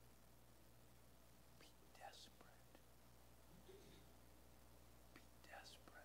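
Near silence: room tone with a steady low hum, broken by two faint, brief breathy sounds, one about two seconds in and one near the end.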